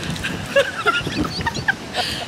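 A woman laughing in short, broken bursts.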